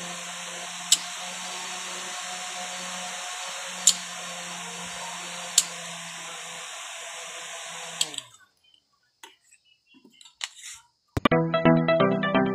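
12-volt electric fan running on its second speed setting: a steady low motor hum under the hiss of moving air, with three sharp clicks. The sound cuts off about eight seconds in, and electronic music starts near the end.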